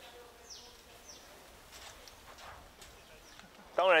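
Quiet outdoor background with faint voices in the distance and two short, high-pitched falling calls in the first second, like a small bird. A man starts speaking near the end.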